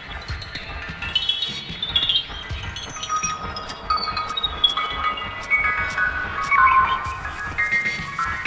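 Ambient electronic music: high sustained tones shifting in pitch over a low pulse, with one long tone gliding steadily downward through the middle.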